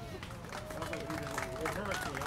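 A small crowd clapping, mixed with indistinct talking; the clapping grows denser toward the end.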